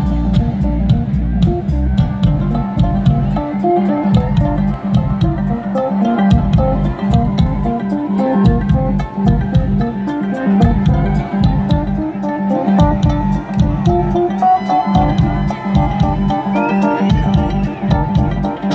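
Live band playing through a large outdoor PA, heard from out in the audience: guitar lines over bass and a steady drum beat, with no break.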